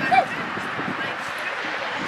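A dog gives one short yip just after the start, over a steady background of distant voices from the crowd and field.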